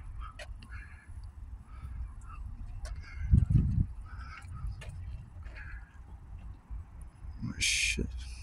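Outdoor background with a low wind rumble on the microphone, a heavier handling bump about three and a half seconds in as the phone is swung around, and a few faint short animal calls.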